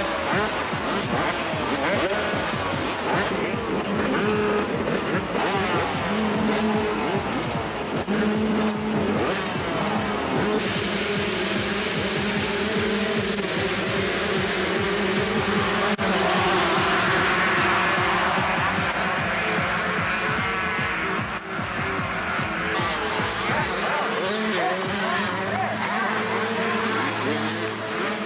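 A pack of two-stroke motocross bikes revving hard at the start line, then all going to full throttle together as they launch off the start about ten seconds in, followed by engines screaming at high revs as the pack races away.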